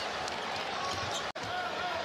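A basketball being dribbled on a hardwood court over steady arena background noise, with a brief dropout a little past halfway where the footage is cut.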